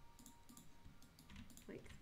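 Faint, scattered clicks of a computer mouse and keyboard being worked at a desk.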